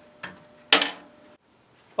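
Steel rebar handled in a bench vise: a light knock, then one sharp metallic clank about three-quarters of a second in that rings briefly.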